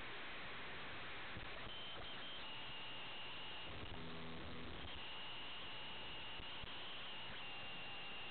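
Steady hiss from an airband radio receiver on an open channel between transmissions, with a faint high whistle that comes and goes and a brief faint hum about four seconds in.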